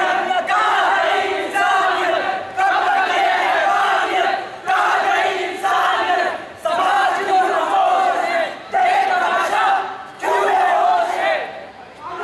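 A group of young men chanting loudly in unison, one phrase about every two seconds with short breaks between.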